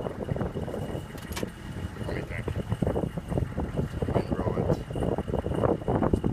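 GMC Sierra 2500 plow truck running, heard from inside the cab: an uneven low rumble with a faint steady high whine and a sharp click about a second and a half in.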